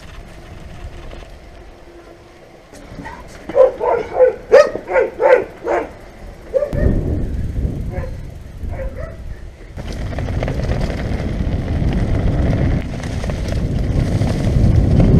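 A dog barking in a quick run of about eight loud barks, then a few fainter ones. A steady rushing noise of wind on the microphone and tyres on the trail then rises as the bike picks up speed.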